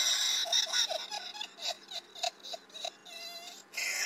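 A human voice altered by a voice-changer effect, heard as a string of short high-pitched sounds, whimper-like or laugh-like, with a longer held note a little past three seconds in.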